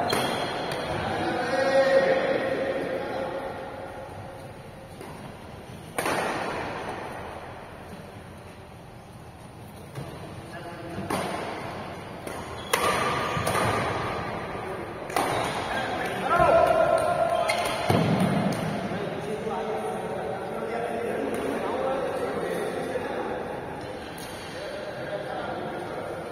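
Badminton rackets hitting a shuttlecock: several sharp cracks spaced irregularly through a rally, each echoing in the hall, with players' voices between them.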